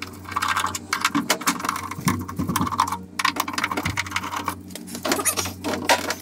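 Rapid, irregular small metallic clicks and rattles of a screwdriver working on the lock and handle mechanism inside a classic Mini's steel front door.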